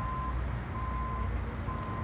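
A vehicle's reversing alarm beeping, a steady single-pitched beep about once a second, over a low rumble.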